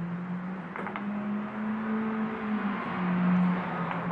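A low hum that shifts slightly in pitch, over steady noise, with a few faint clicks about a second in.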